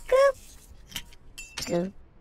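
Two short voice-like yelps from the chopped-up advert soundtrack, one at the start and one near the end, with sharp clicks and clinks between them.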